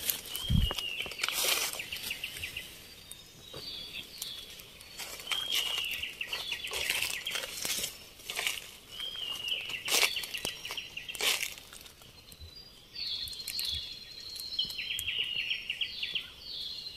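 Footsteps crunching and rustling through dry leaf litter on a forest floor. High chirping calls, like birds, repeat every second or two over them.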